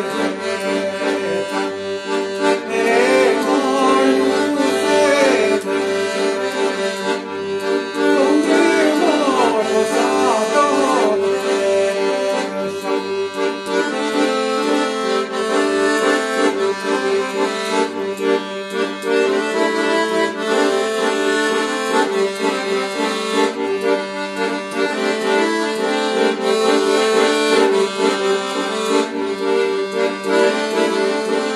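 Royal Standard piano accordion playing a traditional Albanian tune: a melody over sustained chords, with a pulsing bass beneath.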